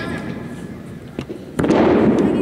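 A short sharp crack just over a second in, then a loud slam on the competition floor near the end, from a wushu staff routine's floor strike or landing, ringing on in a long echo through a large arena.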